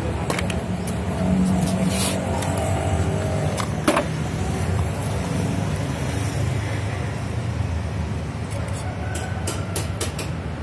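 A motor vehicle engine running steadily nearby, a constant low rumble, with a few sharp metal clicks and knocks from the AC compressor's clutch pulley and parts being handled, the loudest about four seconds in.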